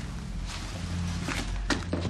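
Background music with a steady low bass, with a few short knocks over it.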